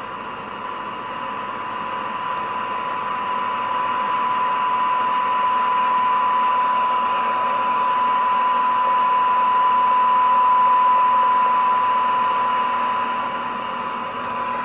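Cobra 25 CB radio's speaker reproducing a steady 1 kHz test tone from a weak AM signal, with receiver hiss behind it. The tone grows louder and clearer over the first ten seconds as the test signal is raised from about 0.3 to 1 microvolt, then eases slightly near the end: a receiver sensitivity check, the set hearing the signal well after its tune-up.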